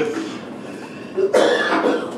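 A person coughing once, a short loud burst about a second and a half in.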